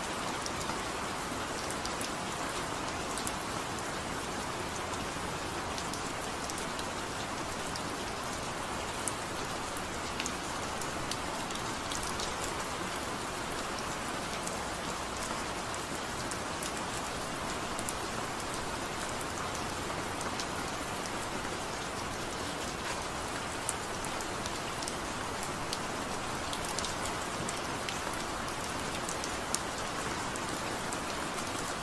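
Steady rain falling, an even hiss with scattered sharp drop ticks. No music is heard.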